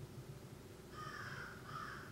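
A bird calling twice in quick succession about a second in, faint, over a low steady room hum.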